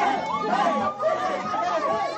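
A group of people talking and calling out over one another in lively, overlapping chatter.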